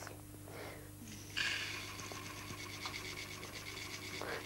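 Dry red lentils being poured into a tall clear jar: a steady hissing rattle of many small grains pattering onto glass and onto each other, starting suddenly about a second and a half in.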